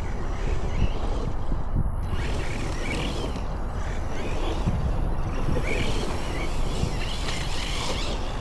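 Steady rumbling noise of wind on the microphone, with a few faint rising and falling whines from a distant electric RC truck's motor.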